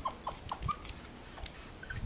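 Dog giving short, soft whines, four quick falling calls in a row in the first second.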